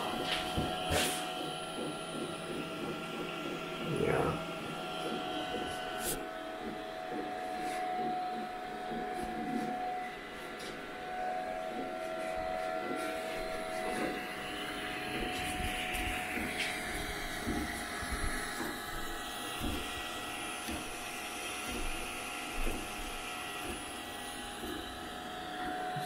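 CoreXY 3D printer running a print: its fans give a steady whine while the stepper motors hum and shift in pitch as the print head moves back and forth. A few brief clicks are heard along the way.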